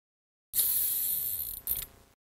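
Logo-animation sound effect: a hissy whoosh starting about half a second in and lasting about a second, with a faint falling tone under it, then a shorter second swish that fades out near the end.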